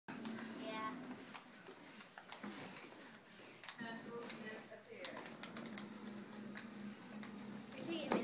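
Indistinct voices talking in a small room, with two short high-pitched sounds about a second in and near four seconds in.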